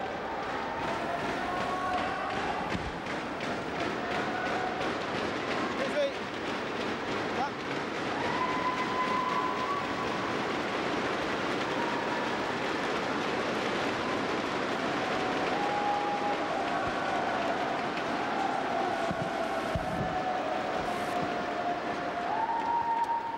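A large arena crowd cheering and chanting in long held unison calls. Under it runs a dense, fast clatter of inflatable thundersticks being beaten together.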